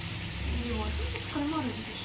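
A seafood mix of mussels, squid rings and shrimp sizzling in butter in a frying pan, with a voice talking faintly partway through.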